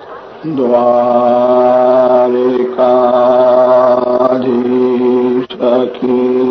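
A man's voice chanting devotional phrases in long held notes on one steady pitch: three drawn-out phrases with short breaks between them.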